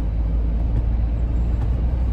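Steady low rumble of a vehicle on the move, heard from inside its cabin.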